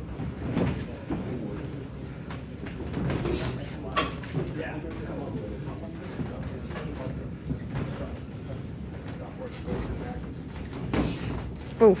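Boxing sparring in a gym: scattered thuds of gloved punches and footwork on the ring canvas over background voices, with a loud "oof" from someone just before the end.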